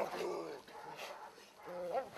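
A service dog giving two short, pitched vocal calls while it works the bite suit, one right at the start and one near the end.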